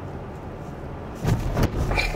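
Low, steady cabin rumble of a Kia K5 creeping along at low speed, with two short thumps about a second and a half in.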